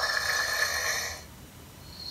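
Living.AI EMO desktop pet robot's electronic snoring sound, one snore of about a second that fades out: the sign that the robot is asleep.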